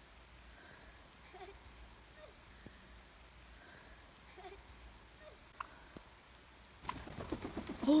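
Faint outdoor background with a few soft short sounds, then, about seven seconds in, a wild turkey flushes with a burst of loud, heavy wingbeats.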